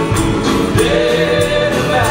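Live rock band playing a song with sung vocals over drums and electric guitars, with a steady beat.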